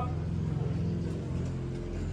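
A steady, low, engine-like drone of several held low tones, from a motor running somewhere below.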